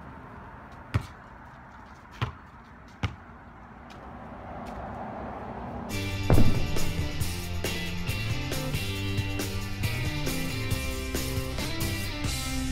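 A basketball hits the court three times, with sharp impacts in the first three seconds. About six seconds in, loud background music with drums and pitched instruments comes in and continues.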